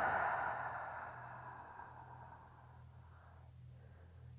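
A long, deep breath out through the mouth, a rush of air that fades away over about three and a half seconds: a cleansing yoga exhale.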